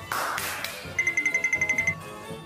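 Edited-in sound effects: a short whooshing swish, then about a second of fast, high, evenly spaced pinging, roughly a dozen pings in a row, like a small bell being shaken.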